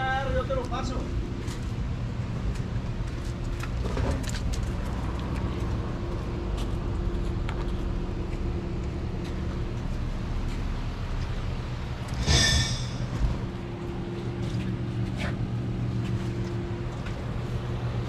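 Putzmeister TK70 trailer concrete pump's engine running steadily, a constant drone. A brief high-pitched burst comes about twelve seconds in.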